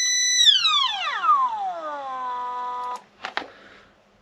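Stepper motor whining at a high steady pitch, then falling smoothly in pitch as its pulse-generator speed control is turned down, holding a lower whine and stopping about three seconds in. Two short clicks follow.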